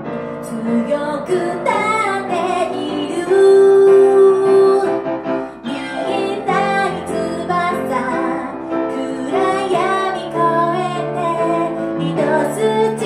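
A woman sings a ballad through a microphone with grand piano accompaniment. About three seconds in she holds one long note, the loudest moment.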